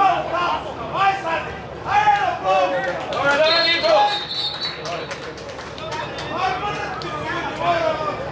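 Men shouting across a football pitch, players calling out during play. About three and a half seconds in comes a short, high referee's whistle blast, stopping play for a foul as a player goes down.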